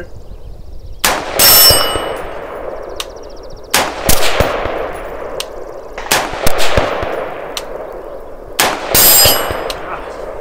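Bear Creek Arsenal AR-15 rifle firing a string of shots, in four groups about two and a half seconds apart, some of them two or three quick shots, each with a long echoing tail. A high metallic ringing follows the first and last groups.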